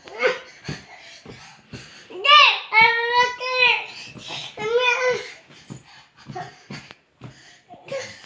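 A toddler's hands slapping on a thick blanket over a lying child, a run of irregular thumps. His high-pitched squeals and babble sound between about two and five seconds in.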